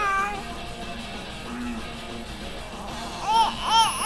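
A baby gives two short, high-pitched squeals near the end, over faint background music.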